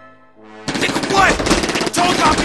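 A music track fades out, and about two-thirds of a second in rapid gunfire starts suddenly and keeps going, with people shouting over it.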